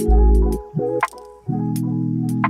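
Background music: held chords with a deep bass note in the first half-second and light percussive clicks.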